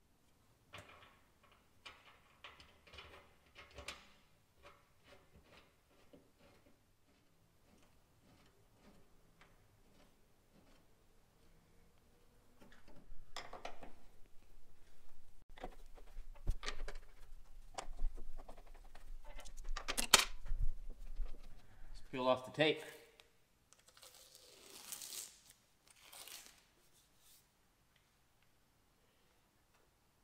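Hands fitting a plexiglass sight-glass panel and its gaskets against the sheet-metal hydraulic tank of a skid steer and working its bolts: scattered light clicks, then a louder run of knocks and scrapes in the middle. A short hissing rasp near the end.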